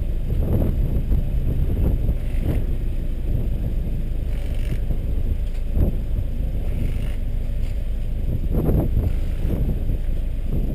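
Wind buffeting an exposed car-roof camera microphone: a low, gusty rumble that keeps swelling and easing.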